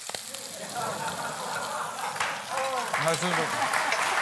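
Food sizzling in a pan on the stove, a steady frying hiss under a few short voice sounds. Near the end a studio audience begins to applaud.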